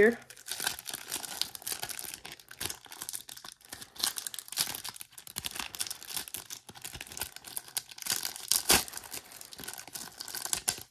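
Thin cellophane wrapper around a trading card crinkling and crackling in irregular bursts as fingers pick and pull at it, trying to work the card out. The loudest crackles come about eight and a half seconds in.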